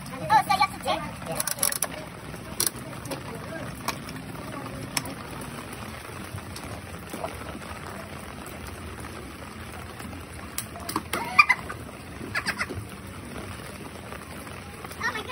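Steady rain falling on an umbrella, with a few sharp clicks in the first five seconds and brief voices near the end.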